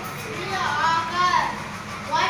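Speech only: a child's voice speaking, with no other distinct sound.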